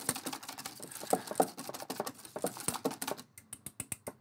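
Wire whisk beating thick batter in a stainless steel bowl, with the wires clicking and tapping rapidly and unevenly against the bowl as water is worked in. Near the end it thins to a few separate clicks.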